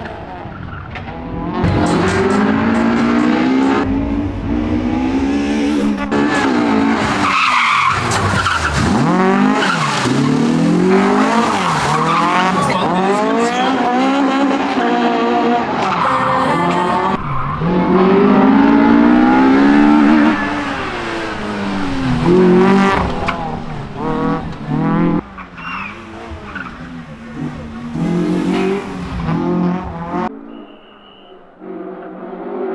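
Honda Civic rally car's four-cylinder engine revving hard, its pitch climbing through each gear and dropping at every shift, with tyres squealing as the car slides through corners. It grows quieter and more broken up in the last few seconds as the car pulls away.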